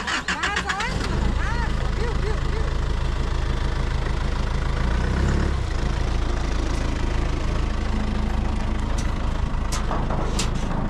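Zamyad pickup truck's engine started, catching within about a second of a sudden onset, then idling steadily.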